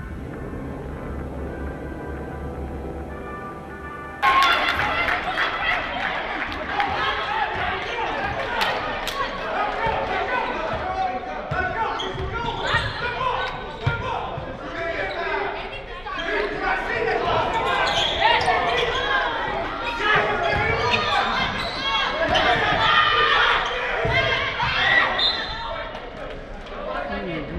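Music plays for about four seconds, then cuts to basketball-game sound in a gym: a ball dribbling on the hardwood floor with the knocks echoing, over the voices and shouts of players and spectators.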